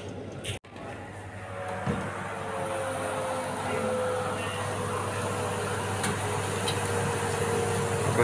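Electric oven running with a steady low hum, and a faint sizzling hiss that grows from about two seconds in as the chicken cutlets and vegetables roast on the tray.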